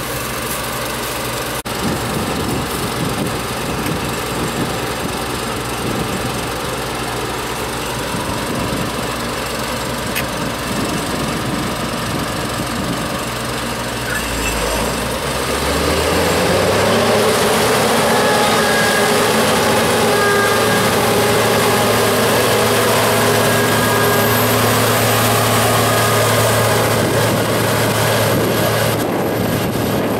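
Claas Tucano 320 combine harvester's engine running; about halfway through it revs up with a rising pitch and holds a louder, steady drone.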